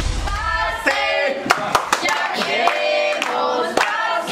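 A group of adult voices singing a birthday song together, with hand claps in time. Background music fades out in the first second, just before the singing comes in.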